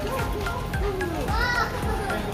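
Young children's high voices, with a brief high-pitched call about one and a half seconds in, over background music and other voices.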